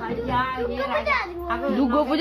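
Speech only: a young boy talking, his voice rising and falling in pitch.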